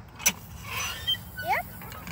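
Metal ride-on playground sand digger being worked by hand: a click, a brief scrape, then a short squeak that rises in pitch from its joints as the arm swings.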